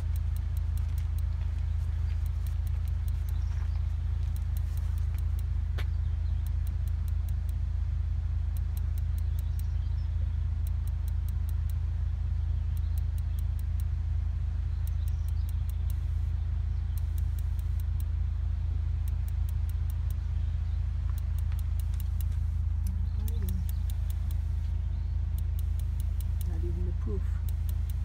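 Gas refrigerator's electronic igniter clicking in repeated runs of sparks as it tries to light, over a steady low rumble. The burner does not catch, which the owners take to mean it isn't getting fuel.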